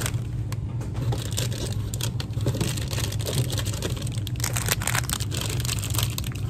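Rustling and crinkling of plastic product packaging and handling of the phone, many short irregular clicks, over a steady low hum.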